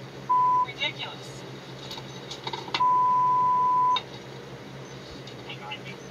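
Two steady censor bleeps blanking out profanity in body-camera audio: a short bleep near the start and a longer one of just over a second in the middle, with faint clipped speech between them.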